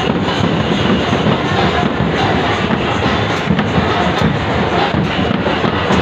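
Loud festival music with dense drumming over a large crowd's noise.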